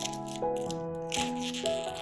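Thin plastic shrink wrap crinkling and crackling as it is peeled off a cardboard box, loudest for most of a second starting about a second in, over soft piano music.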